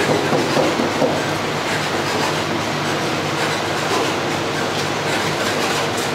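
Electric cotton candy machine running, its spinning head turning out sugar floss, with a steady motor hum and rattle.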